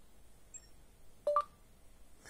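Google voice search start chime from a Rakuten Hand 5G phone's speaker: two quick rising beeps, low then high, about a second in, as the microphone begins listening.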